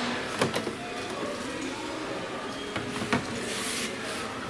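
HumminGuru ultrasonic record cleaner's motor turning a vinyl record in an empty basin, a steady low mechanical running sound; with no fluid in it the machine spins but does no cleaning. Two sharp clicks, about half a second in and about three seconds in, and a brief hiss near the end.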